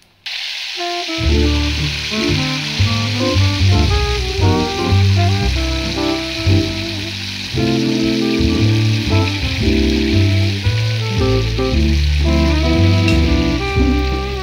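Oil sizzling as balls of idli-batter bonda deep-fry in a kadai. The hiss starts abruptly right at the start, and background music comes in over it about a second later.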